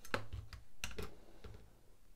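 A few light clicks and knocks as a chef's knife is shifted by hand on a small digital pocket scale, its steel blade and handle tapping the scale and the wooden tabletop.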